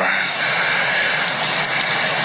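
A steady, even rushing noise, like a distant engine or wind roar, with no clear rhythm or pitch.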